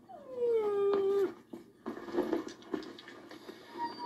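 German shepherd dog whining once: a call that falls in pitch and then holds steady for about a second before breaking off. After it there are only faint small sounds.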